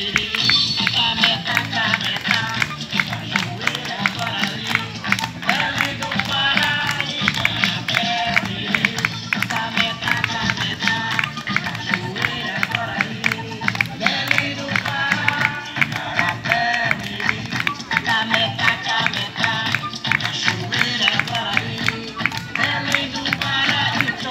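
Candomblé music: a fast, dense drum rhythm with voices singing over it, running steadily throughout.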